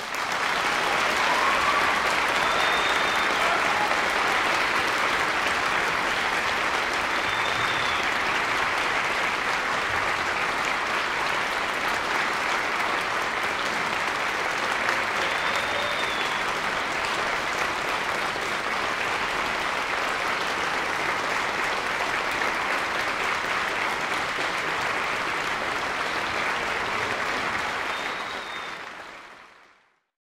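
Concert audience applauding, starting suddenly and holding steady, then fading out near the end.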